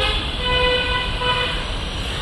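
A vehicle horn honking at one steady pitch for about a second and a half, over low street traffic noise.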